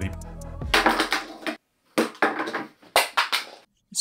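Small plastic wireless microphone transmitters dropped and clattering on a wooden desk, four separate impacts over a couple of seconds.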